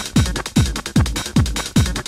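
Acid techno track with a steady four-on-the-floor kick drum, about two and a half beats a second, each kick a deep thud that drops in pitch. Busy hi-hats and percussion play over it.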